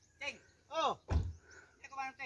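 A small pickup truck's door slammed shut once, a single heavy thunk a little over a second in, among short falling voice-like calls.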